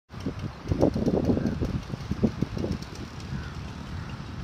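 Wind buffeting a phone microphone: an irregular low rumble in gusts over the first three seconds, easing toward the end.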